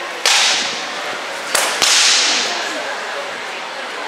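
Three sharp cracks of rattan weapons striking in armoured combat: one about a quarter second in, then two in quick succession a little over a second later, each trailing off in the echo of a metal-walled hall.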